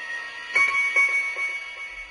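A high bell-like chime struck about half a second in, ringing on and slowly fading, with a few lighter tinkling strikes after it, as part of a trailer's soundtrack.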